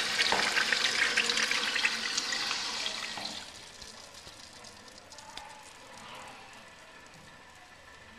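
1972 American Standard Washbrook urinal flushing through its Sloan flushometer: water rushes through the bowl, then fades out about three and a half seconds in to a faint trickle.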